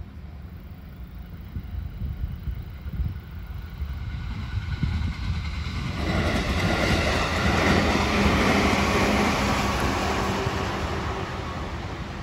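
A JR 211 series electric commuter train passing along the line. Its running noise builds over the first half, is loudest around eight seconds in, then slowly fades as it pulls away.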